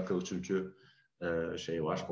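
Speech: a person talking over a video call, with a short pause about a second in.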